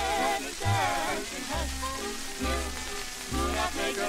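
Old 1940s 78 rpm record of a Yiddish folk song playing: close vocal harmony over orchestral accompaniment with bass notes, under steady surface hiss and crackle from the disc.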